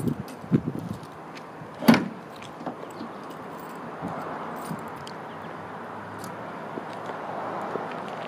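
The rumble seat lid of a 1938 Buick Special convertible is lowered and shuts with one sharp metal thunk about two seconds in, after a few small clicks. A soft, steady rubbing follows as a cloth wipes over the painted rear deck.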